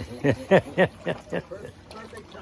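A person's voice: a run of about five short, evenly spaced syllables, then a lull near the end.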